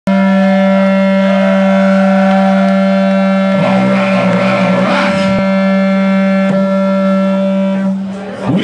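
Electric guitar held on one loud, steady distorted note through its amplifier, droning without a break. About halfway through, a voice shouts over it for a second or two.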